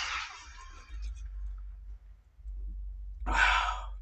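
A man lets out a single breathy sigh about three seconds in, after a long swig from a 40 oz glass bottle of malt liquor. Before it, background music fades out at the start, leaving a low quiet stretch.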